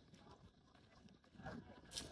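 Near silence with faint, indistinct voices and a sharp click near the end.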